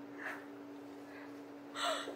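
A woman's breathing during a pause: a soft breath early on and a sharp, audible in-breath near the end, over a low steady hum.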